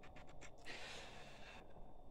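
A few faint, short key taps on a laptop keyboard as a number is typed in, with a soft breath near the microphone for about a second in the middle.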